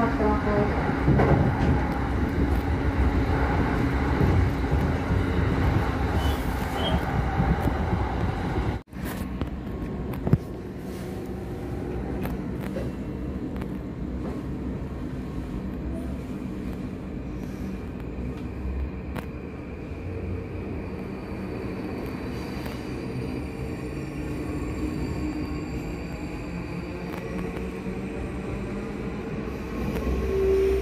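Running noise of a moving commuter train heard from inside the carriage: a steady rumble of wheels on rails. About nine seconds in the sound cuts out for an instant and then carries on quieter, with a faint steady hum.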